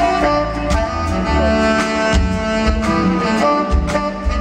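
Live funk/R&B band: a tenor saxophone holding long notes over electric guitar, bass and drums.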